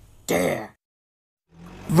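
A cartoon character's short, slightly falling grunt or throat-clearing sound, about half a second long and coming a third of a second in. It is followed by silence, and a voice starts to rise near the end.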